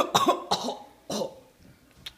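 A person coughing: a burst of coughs at the start, then two more short coughs over the next second.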